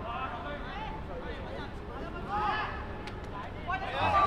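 Faint shouts and calls from football players and onlookers, in short scattered bursts over steady low background noise.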